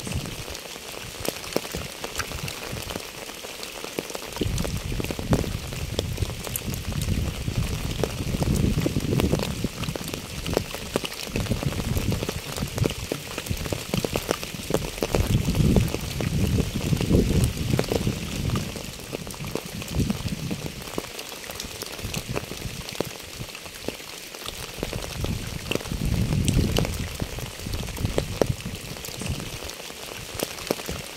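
Steady rain falling on a wet asphalt path and puddles covered in fallen leaves, a dense patter of individual drops. A low rumble swells and fades several times underneath.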